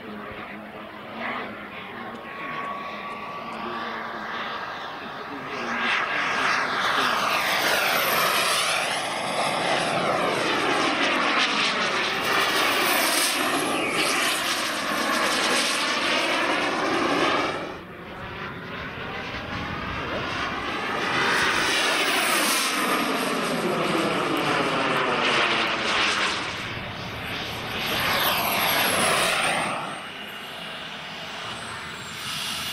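Radio-controlled scale model jet's turbine whining and rushing as it makes repeated passes. The sound swells and fades with each pass, with a high whine that slides down in pitch as the jet goes by. The sound cuts off abruptly just past halfway and then builds again for further passes.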